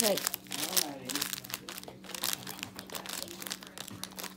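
Plastic instant-noodle seasoning sachet crinkling as it is handled and squeezed, with rapid, irregular crackles.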